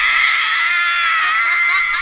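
A group of women screaming together in excitement: one long, high-pitched squeal from several voices at once.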